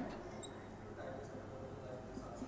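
Faint sound of a marker pen writing on a whiteboard, with one brief high squeak from the marker about half a second in.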